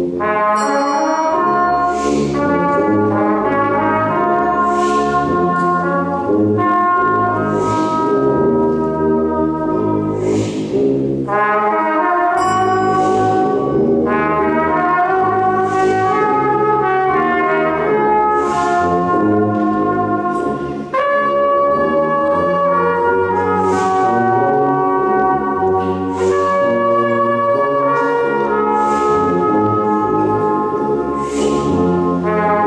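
Brass band playing a piece of music, a moving melody over sustained band harmonies, continuous throughout.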